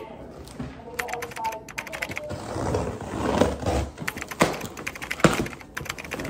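A cardboard shipping box being handled and unpacked: a run of clicks, scrapes and rustles of cardboard, with two sharper knocks about four and five seconds in.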